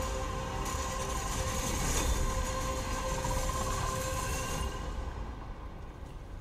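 Movie-trailer soundtrack: a tense, held chord over a deep steady rumble, with a faint rising tone in the middle, thinning out about five seconds in.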